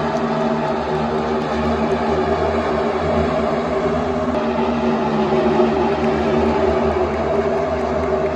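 A pack of NASCAR Cup Series stock cars with V8 engines running together around the oval, giving a loud, steady drone.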